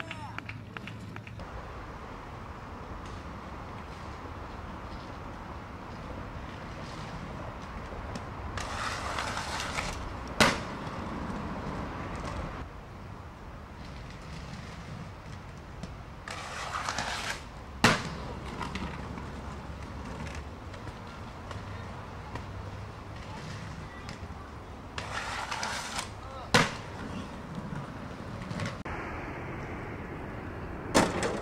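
Aggressive inline skate wheels rolling on pavement, the rolling rising three times and each time ending in one sharp, loud hard impact, roughly eight seconds apart.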